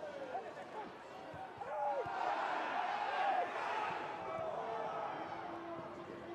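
Football crowd noise with scattered shouts, swelling about two seconds in as a free kick is delivered into the box, then slowly easing off.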